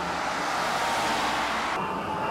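A bus driving past close by on the street: a rushing traffic noise that swells in the middle and drops away suddenly near the end.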